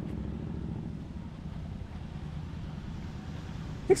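Street traffic at a road junction: a steady low rumble of cars going by.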